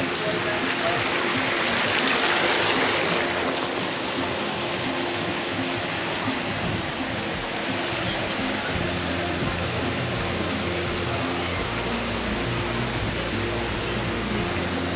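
Water pouring from a kiddie-pool spray spout and splashing into the shallow pool, loudest in the first few seconds and then fading to a steady wash. A low steady hum comes in about nine seconds in.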